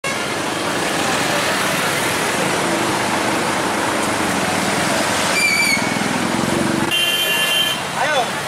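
Congested street traffic: engines running and a busy crowd din, with a short high toot about halfway through and a car horn held for about a second near the end.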